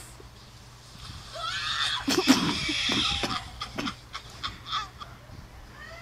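High, wheezing laughter with shrieks, starting about a second and a half in and loudest just after two seconds, then dying away into a few short sounds.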